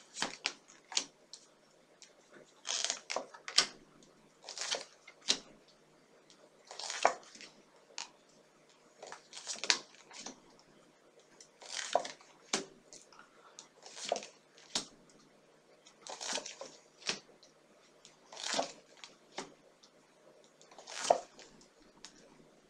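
A tarot deck being shuffled by hand: short papery rustles and clicks of cards, repeating roughly every two seconds.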